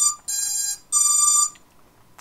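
Electronic beeper sounding a run of half-second beeps that alternate between a higher and a lower pitch, stopping about one and a half seconds in.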